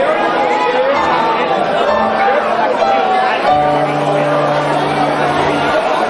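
Live keyboard playing held chords, changing about two seconds in and again past three and a half, under the chatter of a club crowd.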